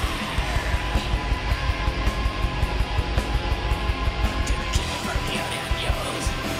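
Black metal band playing live: distorted electric guitars and a held tone over rapid, driving drumming.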